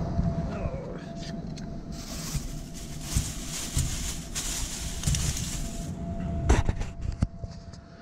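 Brown paper bag crinkling and rustling as it is handled for about four seconds, followed by a few sharp knocks.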